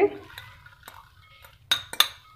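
Glass dishes clinking as corn kernels are tipped from a small glass bowl into a glass salad bowl: a few light taps, then two sharper clinks near the end.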